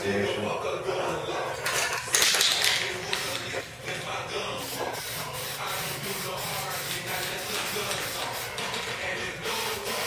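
An aerosol spray paint can spraying in one loud hissing burst of about a second, starting about two seconds in, with quieter steady noise after it.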